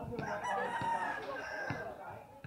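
A rooster crowing: one long call lasting about a second and a half.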